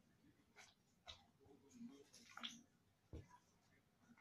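Very quiet: a few faint sticky clicks and squelches as sticky glue slime is stirred and pulled up out of a metal bowl with a spatula.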